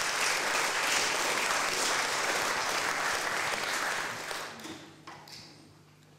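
Audience applauding, dying away about four to five seconds in.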